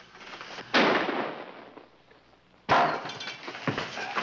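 Gunfire and breaking glass during a shooting: two sudden loud crashes about two seconds apart, each dying away over about half a second, the second followed by a short clatter.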